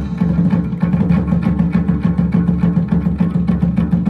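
Vietnamese chầu văn ritual music: a plucked lute over a fast, even clicking beat of about seven or eight strokes a second, with no singing.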